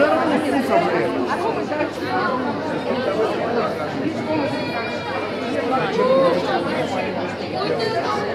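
A crowd of people talking and arguing over one another, many voices at once, none of them clear.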